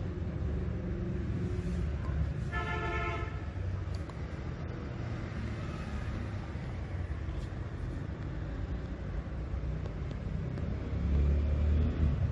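Steady low rumble of background road traffic, with one horn-like toot lasting about a second, about two and a half seconds in. The rumble swells louder near the end.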